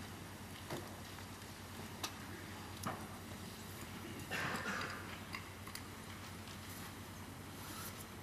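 Hushed concert hall room tone: a faint steady hum with scattered small clicks and knocks, and a short rustle about four and a half seconds in.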